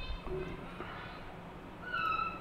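Faint animal calls over low room noise, the loudest a short high-pitched cry near the end.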